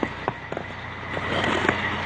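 Stones being shifted on street pavement: a few scattered knocks and scrapes, over the low steady hum of a vehicle engine running.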